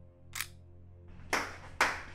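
One man's slow hand claps: two sharp claps about half a second apart in the second half, after a faint short click just under half a second in.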